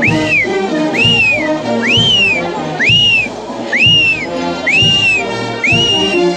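Brass band music with a steady drum beat, and over it a high whistle sounding a rising-then-falling call on each beat, about once a second, seven times.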